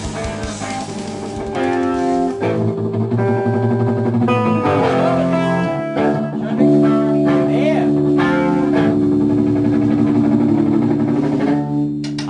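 Guitar-led music: a melody of held notes over a sustained low note, with a bent note about seven seconds in.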